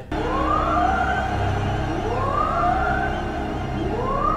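Film soundtrack music: a rising, siren-like glide repeats about every two seconds over a low, steady drone.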